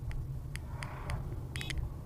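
Steady low rumble of a car's engine and tyres heard from inside the cabin at low speed, with scattered light clicks. A brief whoosh about a second in as an oncoming SUV passes close by, and a short high chirp near the end.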